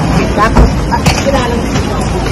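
Busy outdoor background noise with brief snatches of voices and a couple of sharp clicks, the first with a low thump.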